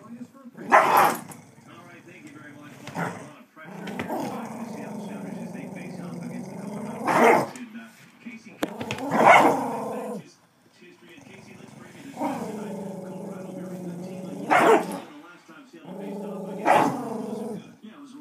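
Dogs playing tug of war: long, drawn-out growls of a few seconds each, three times, broken by about six short, sharp barks.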